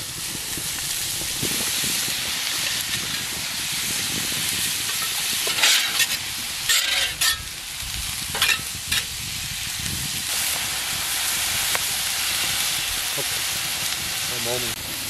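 Diced bacon, potatoes and vegetables sizzling on a hot plancha, a steady frying hiss. Between about six and nine seconds in come a few short scrapes of a metal spatula on the plate.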